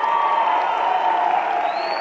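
Audience applauding and cheering, with held shouts running through the clapping.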